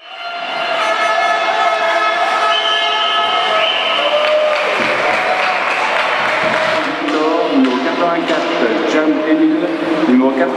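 Sustained horn-like pitched tones that step in pitch a few seconds in, then a noisy stretch. Over the last few seconds comes a man's voice over a public-address system.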